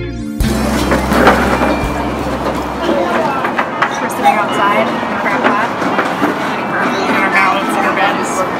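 Background guitar music breaking off about half a second in, then a busy noisy ambience with indistinct voices; a low hum carries on until about three seconds in.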